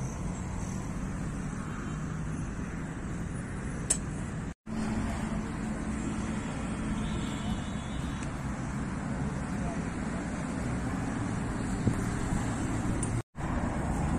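Steady low rumbling outdoor background noise, cut off abruptly twice for a split second, about four and a half seconds in and near the end.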